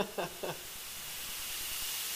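A man's laughter trailing off in the first half second, then a steady high hiss.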